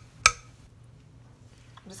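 A spoon knocks once, sharply, against a ceramic mixing bowl as a dollop of peanut butter is scraped off into it. After that there is only quiet room tone.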